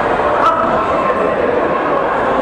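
Spectators' voices shouting and chattering in an echoing sports hall, with a single sharp knock about half a second in.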